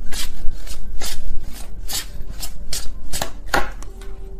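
Tarot cards being shuffled by hand: a quick, even run of short papery strikes, about five a second, easing off just before the end.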